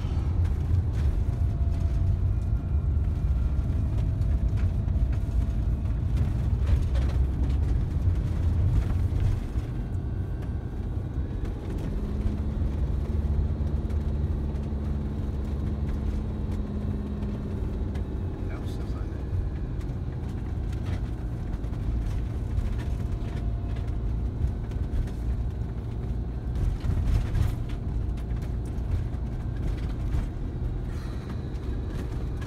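Engine and road rumble heard from inside the cab of a van being driven along a narrow road: a steady low drone that eases off a little about a third of the way in, with a steadier engine note held for several seconds in the middle.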